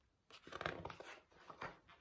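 A page of a large picture book being turned: a faint run of short paper rustles and flaps.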